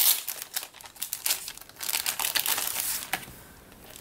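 Crinkling of a clear plastic packaging sleeve being handled as sticker sheets are taken out, dying away near the end.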